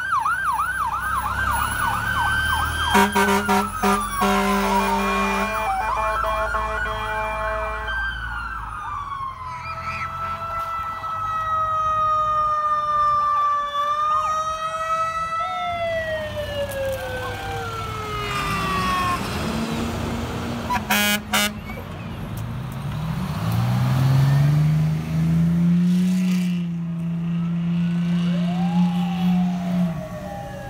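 Emergency-vehicle sirens from a passing fire engine and other parade vehicles: a fast yelp at first, then slow wails rising and falling, with steady horn blasts in the first several seconds. Over the last third a deeper siren winds up and holds a low tone.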